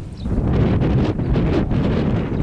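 Wind buffeting the microphone: a loud, uneven low rumble that swells about half a second in.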